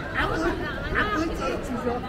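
Passers-by chatting in a pedestrian crowd, close voices over a steady low background rumble.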